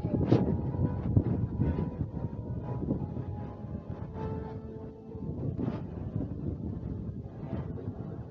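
Wind buffeting a handheld camera's microphone in a low, steady rumble, over the background ambience of people moving about an open square.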